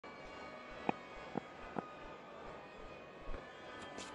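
Faint cricket-ground ambience on a TV broadcast feed: a steady low hum with three soft clicks spaced about half a second apart a second in, and a dull thump near the end.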